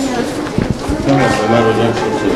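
A crowd of schoolchildren's voices, many calling and shouting at once.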